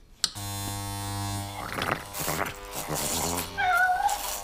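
Electric clippers buzzing steadily as they shave a cat's fur, with rough shearing noise over the buzz in the middle. A short wavering cry near the end is the loudest sound.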